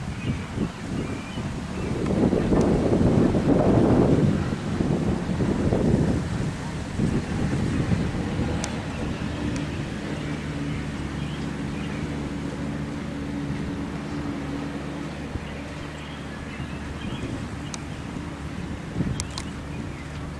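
Wind rumbling on the camera microphone for a few seconds, then a steady low hum that runs on, with a few faint ticks near the end.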